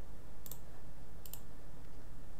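Faint computer mouse clicks: a single click about half a second in and a quick double click a little after a second, over a steady low hum.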